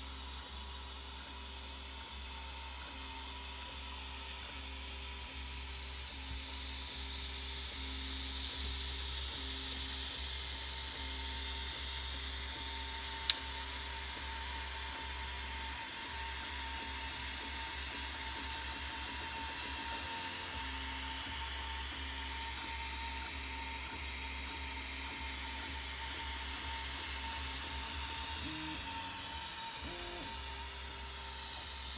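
Anet A8 3D printer running: its stepper motors whine in steady tones that change every second or so as the axes move, over the steady whir of its cooling fans. One sharp click about 13 seconds in.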